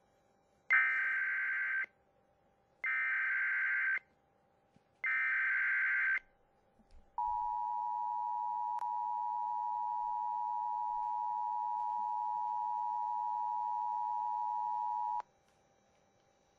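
Emergency Alert System activation: three SAME header data bursts, each a harsh digital screech about a second long, then the EAS two-tone attention signal, a steady dual-tone alarm held for about eight seconds that cuts off abruptly. It heralds a tornado warning.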